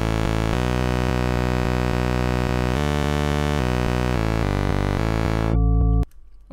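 Serum software synthesizer playing a sequence of sustained chords on a custom, math-generated sawtooth-type wavetable, buzzy and rich in overtones, the chord changing about every second. It swells briefly near the end and then cuts off abruptly.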